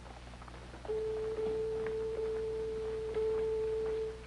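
A single steady, pure held tone comes in about a second in and holds. A fainter tone an octave higher joins it near the end.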